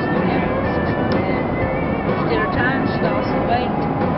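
Country song with a singer's voice playing in a moving car, over steady road and engine noise.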